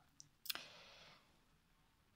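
Near silence, broken by a faint tick and then one sharp click about half a second in, followed by a brief faint hiss.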